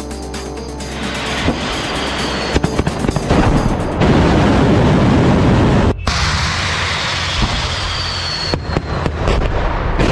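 Solid-fuel rocket motor of a Yars intercontinental ballistic missile at launch: a loud roar builds after about a second as the music fades and peaks a few seconds in. It cuts off suddenly about six seconds in, giving way to a steadier rushing noise with a high whistle and a few sharp cracks near the end.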